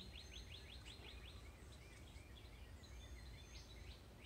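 Faint outdoor birdsong: a bird's rapid trill of short falling notes, about six a second, that fades out a little over a second in. A couple of thin high whistles follow over a low steady background rumble.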